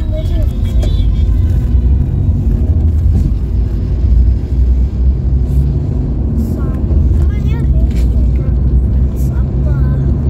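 Steady low road and engine rumble inside the cabin of a Maruti Suzuki Ciaz sedan cruising at highway speed.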